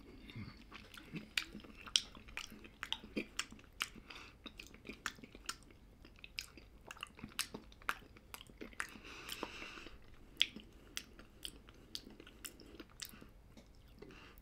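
A person chewing a spoonful of ground-meat soup with the mouth close to the microphone: many small, irregular wet mouth clicks and smacks, with a short breath about two thirds of the way through.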